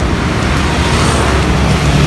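Steady rumble of road traffic passing close by, growing slightly louder toward the end.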